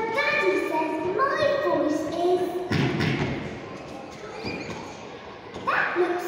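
A high voice talking, with one dull thud just under three seconds in.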